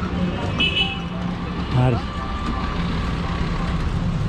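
Street traffic noise with a steady low rumble, a short high-pitched horn toot about half a second in, and brief voices of passers-by.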